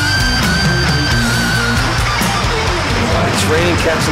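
Heavy metal band playing live, electric guitar and bass over drums, with the lead guitar holding one long high note for about the first two seconds.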